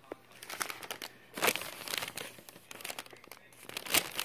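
Crinkling and rustling of paper and plastic packaging being handled, in irregular crackles with the loudest bursts about a second and a half in and just before the end.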